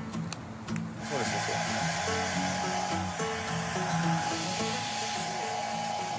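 A handheld hair dryer is switched on about a second in and runs steadily: a rushing blow of air with a steady whine on top.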